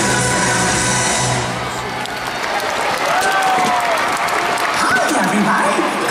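Show music on an arena sound system ends about a second and a half in, and a large audience applauds and cheers, with voices rising near the end.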